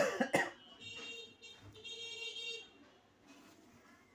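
A person coughing twice in quick succession, followed by a faint voiced sound for a second or two.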